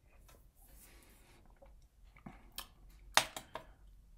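A quiet sip of bourbon from a tasting glass, then a few short clicks and smacks of the mouth as the whiskey is tasted, the loudest about three seconds in.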